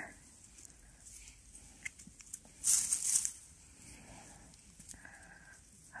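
Dry grass rustling as small saffron milk caps are worked out of the ground with a knife. One brief rustle about half a second long comes near the middle, with a few faint clicks around it.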